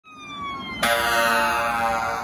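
Emergency vehicle siren winding down in pitch. Just under a second in, a sudden, louder blast of several tones at once breaks in while the falling wail carries on.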